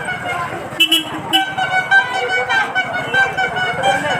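A horn sounding in held, steady notes, on and off, over crowd chatter and street bustle, with a few sharp clicks about a second in.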